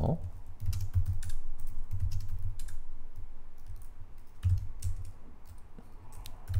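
Typing on a computer keyboard: short runs of key clicks with pauses between them, as brief terminal commands are keyed in.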